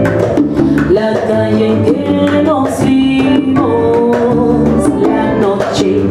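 Live Latin band playing a salsa-style arrangement of a bolero: a woman's voice singing lead over electric bass, piano and hand percussion.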